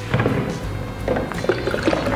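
Background music, with a short pour of sanitising alcohol splashing out of an upturned plastic bottle near the end.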